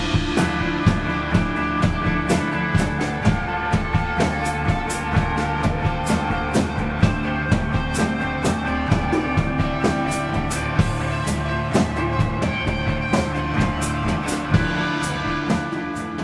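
Loud instrumental post-rock from a full band: a drum kit pounding out dense, steady hits under sustained guitar chords.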